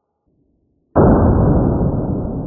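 A single shot from a Sig Sauer 1911 .45 pistol, slowed down: a sudden deep boom about a second in that dies away slowly.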